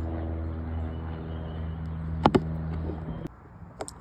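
A steady low mechanical hum, like an engine running, with two sharp clicks a little after two seconds in; the hum cuts off abruptly about three seconds in, followed by a few faint clicks.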